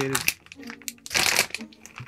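Clear plastic vacuum-seal bag crinkling as it is handled, loudest in a burst about a second in, with a voice murmuring briefly.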